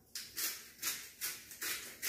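Lemon pepper seasoning being dispensed from its container over a tray of sweet potato fries: about five short, gritty strokes in a steady rhythm, roughly three a second.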